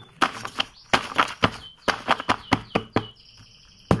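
A hand-held stack of A5 paper sheets rustling and flapping in a quick run of swishes as it is shaken and pulled to loosen and align the sheets. Near the end the stack is knocked once, upright against the table, to square its edges.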